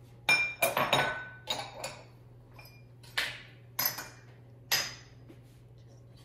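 Dishes and glassware clinking and knocking as they are moved about on a countertop: about eight separate clinks over several seconds, a few with a brief ring.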